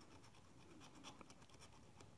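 Faint scratching of a scratch-off lottery ticket's coating being scraped away, a run of short, irregular light scrapes.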